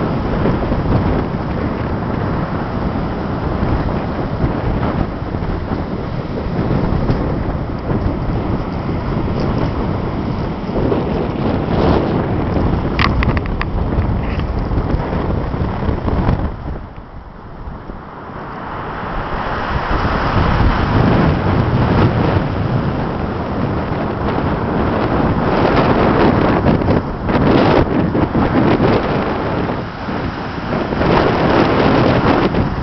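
Storm wind of about 70 km/h buffeting the microphone over heavy surf breaking on the shore. The wind noise drops off briefly about seventeen seconds in, then comes back harder.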